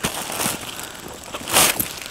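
Clear plastic bag crinkling and rustling as a camera backpack is pulled out of it, with a louder burst of crinkling about one and a half seconds in.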